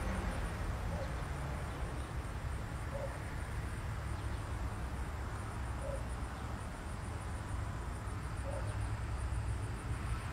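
Outdoor ambience: insects chirping in a high, rapid, steady pulse over a low steady rumble, with a few faint short calls every two to three seconds.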